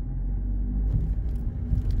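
Low, steady rumble of a car driving slowly on a cobbled street, heard from inside the cabin, with a few faint clicks about a second in and near the end.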